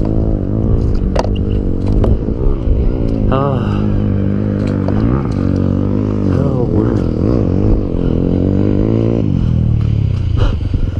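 Off-road dirt bike engine running and being revved up and down repeatedly while the bike is bogged in deep mud.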